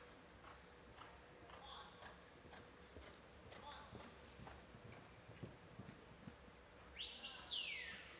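Faint, regular hoofbeats of a loping horse on soft arena dirt, about two a second. Near the end comes a louder whistle that sweeps up and then falls.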